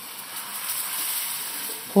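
Thin pancake batter sizzling in a hot frying pan as it is ladled in and spread, a steady hiss that is strongest in the middle.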